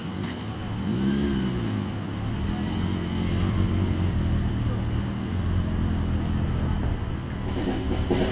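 A police motorcycle's engine starts with a brief rev about a second in, then settles into a steady idle.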